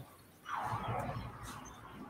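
Faint rustle of thick card-stock trading cards being slid and handled on a desk, a soft brushing sound about half a second in that fades away, with a couple of light ticks.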